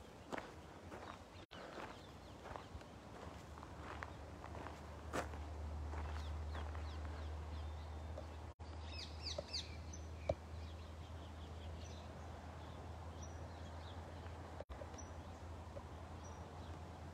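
Footsteps on sandy shore ground, faint and irregular, over a low steady rumble, with a few short high bird chirps about nine seconds in.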